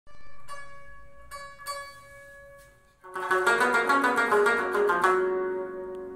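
Afghan rubab played solo: a few single plucked notes ring out over the first three seconds, then a loud, fast run of rapidly plucked notes starts about three seconds in, stops near five seconds and is left ringing and fading.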